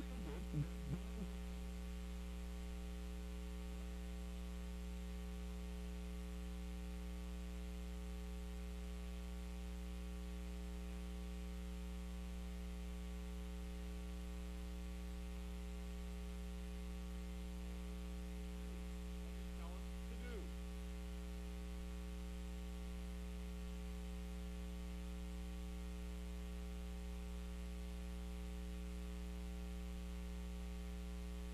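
Steady electrical mains hum with a ladder of overtones in the sound system, heard on its own because the speaker's microphone has dropped out.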